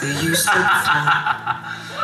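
People talking and laughing.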